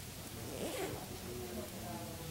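A bag's zipper pulled once: a short rasp about half a second in. Quiet chatter of people in the room runs underneath.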